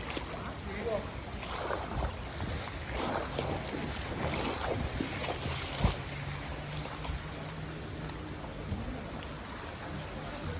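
Floodwater splashing and sloshing as someone wades through a flooded street, the water surging irregularly with the steps. A single sharp thump about six seconds in.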